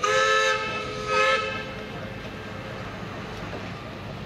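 Steam whistle of the paddle steamer Kingswear Castle blowing two short blasts, several steady tones at once, as she pulls away from the quay.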